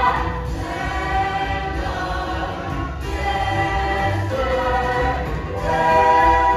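A large stage cast singing together in chorus over musical accompaniment, a musical-theatre ensemble number with long held notes.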